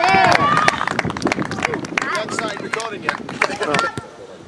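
Several voices shouting and cheering excitedly, mixed with scattered claps. The sound cuts off suddenly at the end.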